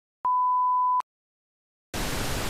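A single steady high-pitched electronic beep tone, under a second long, like a TV test-tone bleep, then dead silence. Near the end a hiss of TV static starts suddenly.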